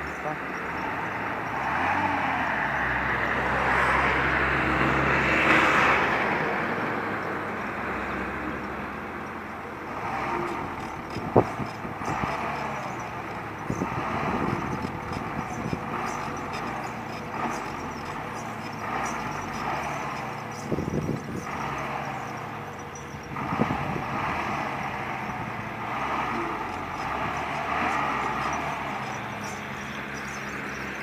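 A large truck's engine running steadily under a constant rushing noise, with voices talking in the background and a single sharp knock about eleven seconds in.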